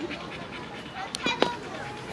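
A dog panting quietly, with two light clicks a little past a second in.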